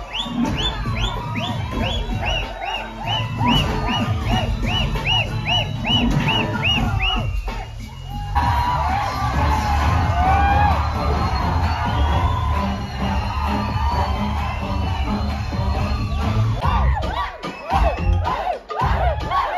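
A film song playing loudly over cinema speakers while a crowd cheers and shouts over it. A high rising-and-falling tone repeats about twice a second through the first seven seconds; the music dips about eight seconds in, then comes back with heavier bass.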